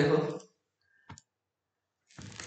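A single short click about a second in, after a brief spoken word: a computer mouse button clicked while working an online whiteboard.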